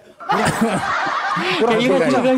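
Several men laughing and chuckling together, starting just after a brief lull, with a few spoken words near the end.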